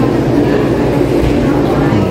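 Indistinct background voices over a steady low rumble of room noise.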